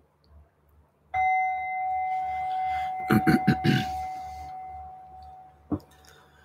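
A meditation bell struck once about a second in, ringing with a clear tone that fades slowly over several seconds to mark the start of a meditation session. A brief knock near the end.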